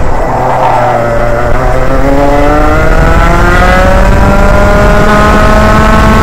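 Senior Rotax Max 125 cc single-cylinder two-stroke kart engine, heard loud from the driver's seat. Its pitch sits low through the corner for about the first second, then rises steadily as the kart accelerates out onto the straight.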